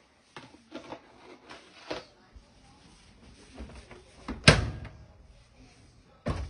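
A few light knocks and clunks of handling, then one loud slam with a brief ringing tail about four and a half seconds in.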